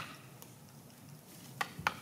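Mostly faint background, then two short, sharp taps near the end: an axe tapping a felling wedge into the cut.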